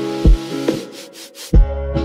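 Lofi hip hop beat: soft kick drums under mellow sustained keys, with a short break about a second in where the bass and keys drop out and a hissing noise swish fills the gap before the beat comes back in.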